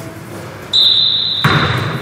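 A basketball bouncing once on a gym floor past the middle, a sharp hit that rings out in the hall. Under it runs a high steady tone, starting about a third of the way in.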